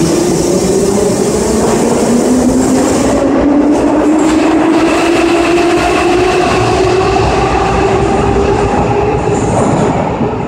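81-717M/714M metro train accelerating out of the station: its traction motors give a whine that climbs steadily in pitch over the rumble of the wheels on the track.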